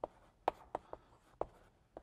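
Chalk writing on a blackboard: a handful of short, sharp taps and strokes, irregularly spaced, as a term is written out.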